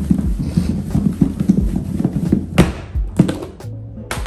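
Catfish pieces and cornmeal thudding around inside a lidded plastic container shaken by hand to coat the fish: a rapid, irregular run of thuds and knocks, with a couple of louder knocks near the end. Background music plays under it.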